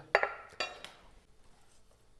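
A metal ladle clinking against a ceramic soup bowl: two sharp clinks in the first second, each ringing briefly before fading.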